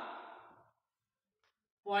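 Speech only: a man's voice trails off, then about a second of dead silence, then he starts speaking again near the end.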